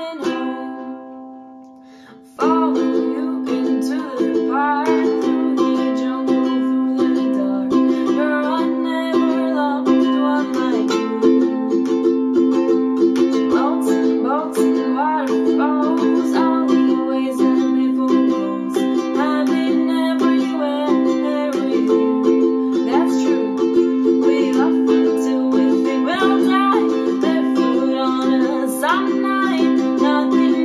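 Soprano ukulele strummed in a steady rhythm. For the first two seconds a chord rings and fades, then the strumming starts again sharply, and a wordless vocal melody runs over the chords.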